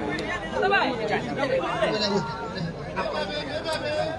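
Several people talking at once in overlapping chatter, with a few faint sharp clicks near the end.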